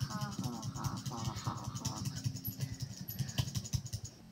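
Audio playing from a computer's speakers: high, wavering voice-like calls over a steady low hum during the first two seconds, then quieter.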